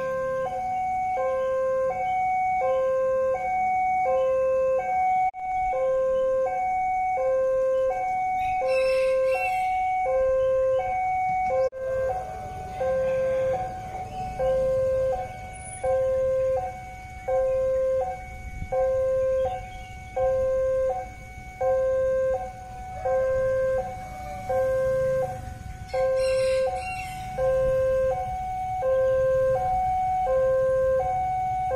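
Railway level-crossing warning alarm sounding its two-tone electronic chime, a low note and a higher note taking turns about every 0.7 s, warning that a KRL commuter train is approaching. The sound breaks off for a moment twice.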